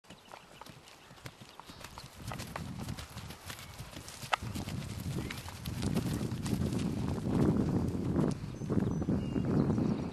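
Horses moving about on pasture grass close by, their hoofbeats thudding irregularly and growing louder as they come nearer, with a single sharp click about four seconds in.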